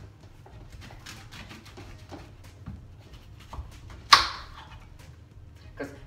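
Kitchen knife cutting a hard quince into quarters on a plastic cutting board: faint scraping and crunching clicks, then one sharp knock of the blade on the board about four seconds in.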